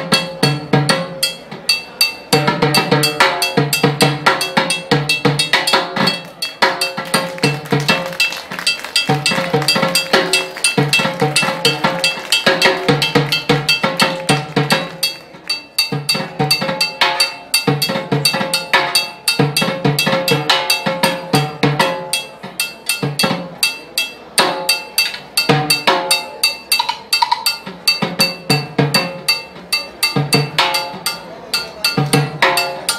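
Solo timbales played with sticks: fast, dense strokes on the drum heads and shells, with sharp clicks from a mounted block and cowbell running through. One hand keeps a clave pattern on the block while the other plays freely around the drums, a hand-independence exercise.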